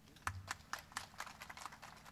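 Faint, irregular crackling clicks, about a dozen, from the plastic wrapping of a flower bouquet being handled near a microphone, with a low bump on the microphone just after the start.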